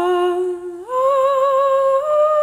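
A wordless vocal line from a folk song holding long notes with a light vibrato, one note and then a step up to a higher held note a little under a second in.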